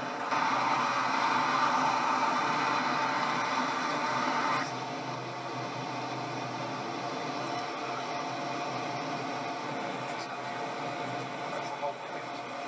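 Steady road and engine noise of a moving car heard from inside, louder for the first four or so seconds and then dropping suddenly to a lower, even level.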